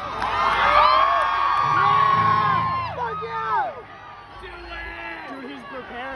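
Concert audience cheering, with many voices whooping and screaming at once. It falls away about four seconds in to lower crowd noise.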